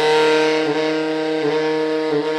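Cannonball tenor saxophone, played with a JodyJazz mouthpiece, sustaining one long low note in an improvised solo, growing slightly softer.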